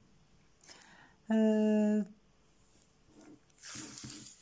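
A woman's held hesitation vowel, a level "eeee" lasting under a second, about a second in. Near the end comes a soft rustle as a tape measure is drawn out over the knitted piece.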